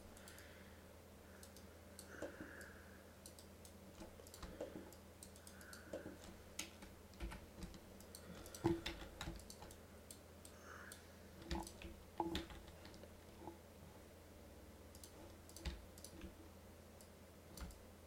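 Faint, irregular clicking of a computer mouse and keyboard, some clicks coming in quick little runs, over a steady low hum.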